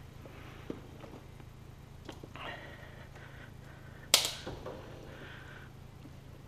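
A single sharp click about four seconds in, with a short ring, as a hand works at the front of a car's engine bay, over a steady low hum and faint handling noise.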